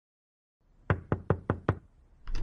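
Five quick knocks on a door, evenly spaced at about five a second, starting about a second in.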